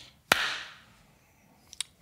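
A single hand clap about a third of a second in, sharp at first with a smeared, fading tail: a really bad clap.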